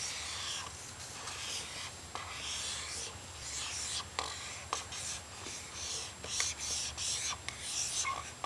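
Dry-erase marker rubbing across a whiteboard in a series of short drawing strokes, with a few light taps of the tip.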